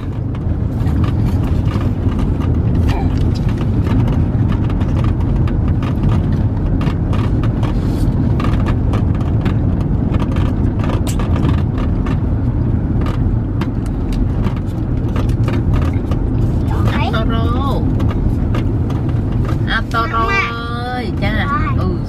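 Steady low road and engine rumble inside a moving car's cabin, with scattered small clicks and rustles over it. A voice is heard briefly about two-thirds of the way through and again near the end.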